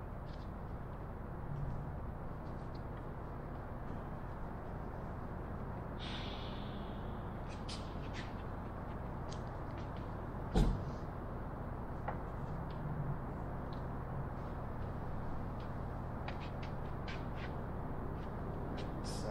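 Steady hum of a large workshop hall, with scattered small clicks and knocks as wooden wedges and plywood parts are shifted by hand. A brief scrape comes about six seconds in and one sharper knock, the loudest sound, about ten and a half seconds in.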